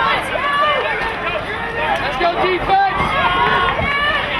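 Many indistinct voices calling and talking at once across an outdoor lacrosse field, players and onlookers overlapping with no single clear speaker.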